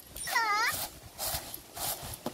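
A short, high whining call that dips and then rises in pitch, followed by two brief rustles of grain in a bamboo winnowing tray.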